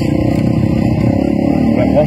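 Freestyle motocross dirt bike engine running steadily as the bike rides across the arena.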